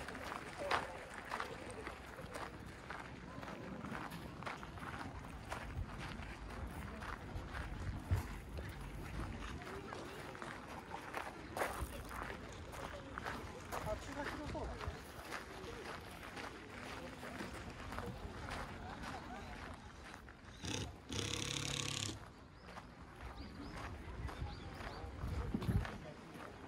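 Outdoor ambience of people talking in the background over footsteps crunching on gravel. About three-quarters of the way through, a louder hissing noise lasts about a second and a half.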